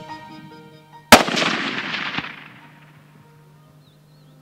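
A single .308 Winchester rifle shot about a second in, followed by an echo that rolls away over about a second and a half. A faint knock comes about a second after the shot.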